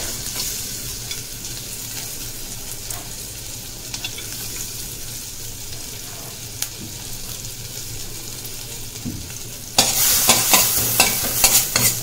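Chopped garlic and ginger sizzling in butter in a stainless steel pan, a steady soft hiss. About ten seconds in it turns louder and crackly as the pieces are stirred around the pan.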